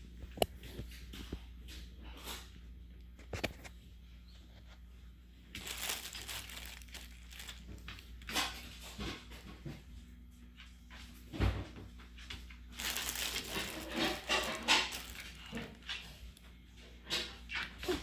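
A husky nosing through torn stuffed toys and loose stuffing on a wooden floor: scattered rustling and crinkling with light knocks and clicks, busiest in the second half, over a steady low hum.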